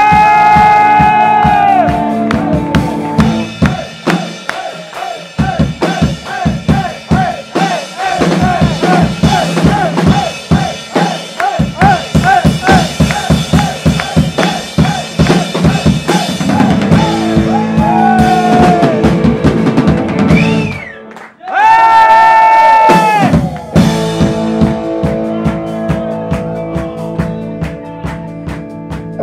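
Drum kit solo: fast runs of drum strokes, several a second, with a held chord from the band at the start and again about two-thirds of the way through.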